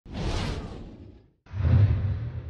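Intro sound effects: a swish that fades away over about a second, then after a brief silence a deep, low hit that dies away slowly.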